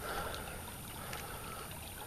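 Faint, steady trickle of shallow creek water running over gravel.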